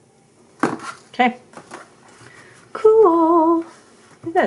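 Wire cutters snip through aluminium craft wire with one sharp click about half a second in. Near the end a woman hums for about a second, with a wavering pitch.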